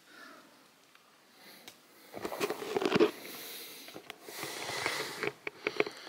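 A person breathing and sniffing close to the microphone after a strenuous climb. The breathing comes in noisy stretches with small clicks and rustles of handling: one about two seconds in, another about four seconds in.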